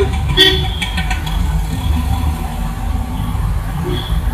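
Road traffic running steadily, with a vehicle horn tooting briefly about half a second in.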